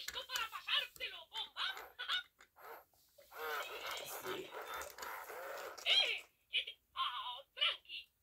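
Spanish-language Mickey Baila y Baila animatronic Mickey Mouse toy talking in Mickey's high, squeaky voice through its small built-in speaker, in short phrases with a brief pause about three seconds in.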